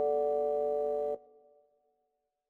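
Final chord of the song, held on keys as steady, pure-sounding tones, cut off a little over a second in with a brief fading tail.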